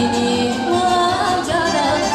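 Live Romanian folk music in the Banat style: singing over a band, loud and continuous, the melody wavering in pitch.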